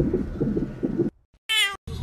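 A low fluttering rumble, then after a brief silence a short meow-like cry about a second and a half in.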